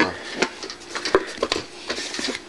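A few light, separate knocks and clicks on a child's toy drum set as its parts are handled and fitted together.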